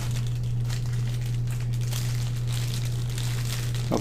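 Plastic packaging crinkling and rustling in irregular bursts as small LED deck lights are handled and pulled from their wrapping, over a steady low hum.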